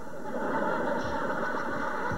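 Studio audience laughing steadily after the punchline.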